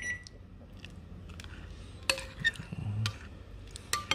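Metal spoon clinking against a ceramic bowl while glass noodles are stirred in soup: one ringing clink at the start, then a few light taps.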